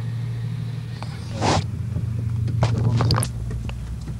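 Car engine running with a steady low hum, heard from inside the cabin as the car drives off over a wet, muddy track. A short rushing noise comes about a second and a half in, and a cluster of sharp clicks and knocks follows around three seconds.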